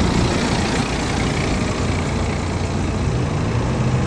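Road traffic: a motor vehicle's engine and tyre noise, steady throughout, with a low engine hum coming in about three seconds in.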